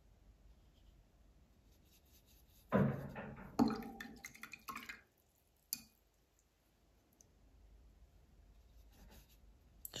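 A gouache paintbrush rinsed in a glass jar of water, knocking against the glass twice close together about three seconds in, the glass ringing briefly; a single sharp click follows a couple of seconds later.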